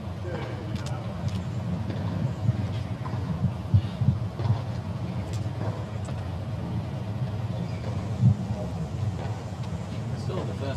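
Outdoor background noise: a steady low rumble with faint, indistinct voices.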